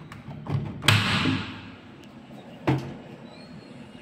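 A few dull thumps and knocks. The loudest comes just under a second in, followed by a brief rush of hiss that dies away, and another sharp knock comes near three seconds.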